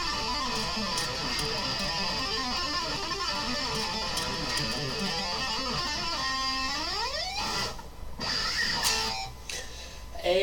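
Electric guitar played with two-handed finger tapping: a fast, unbroken run of legato notes, then about seven seconds in a slide rising up the neck, followed by a couple of brief stops and short notes.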